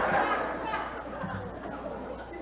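Faint murmuring voices of an audience in a hall, fading after about the first second, over a steady low hum.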